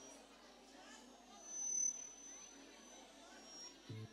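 Faint chatter of a crowd of guests talking in a large hall, with a brief thin high tone about two seconds in.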